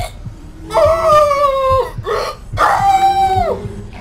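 A woman screaming twice: two long, high screams, each held for about a second and dropping in pitch as it breaks off, over a low rumble.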